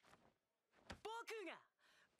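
Mostly quiet: a short breath at the start, then a voice speaking one brief phrase that falls in pitch, about a second in.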